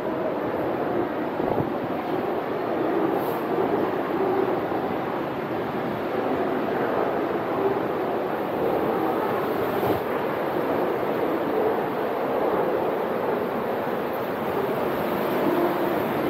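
Ocean swell surging and churning through a sea cave, a steady rushing noise that goes on without a break.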